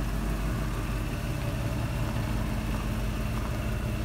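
Lifted 1995 Ford Bronco's engine idling, a steady even hum.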